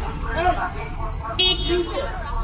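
A short vehicle horn toot about one and a half seconds in, over a steady street-traffic rumble and nearby voices.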